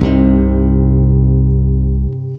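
Yamaha NTX500 nylon-string acoustic guitar: one chord struck and left to ring, slowly fading.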